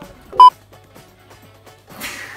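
A single short, loud electronic beep about half a second in, one steady tone with overtones; the rest is faint.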